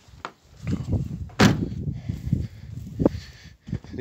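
A few sharp knocks and clunks as a metal part is handled and set in place on a truck cab, the loudest about a second and a half in, over low handling noise.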